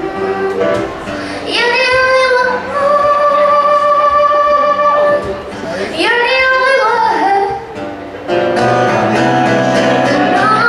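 A woman singing live to her own acoustic guitar accompaniment, holding one long note in the middle of the phrase.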